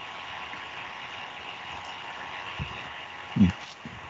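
A pause between speakers, holding only a faint steady hiss with a thin hum of line noise. A speaker gives a brief "mmh" about three and a half seconds in.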